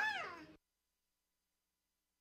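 A young child's high-pitched 'yeah', its pitch rising and then falling, ending about half a second in. After it the sound cuts out to dead silence.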